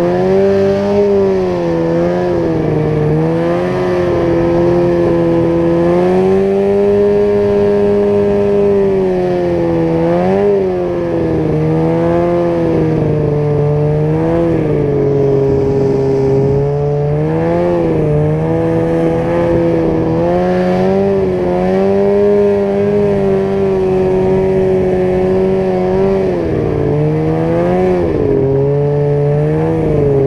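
2001 Ski-Doo Summit 800's two-stroke twin engine running hard at high revs through powder, its pitch dipping and climbing back several times as the throttle is eased and reopened.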